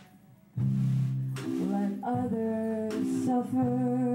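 Live band music: after a brief lull, guitar and a woman's singing come in about half a second in and carry on with sustained, stepping notes.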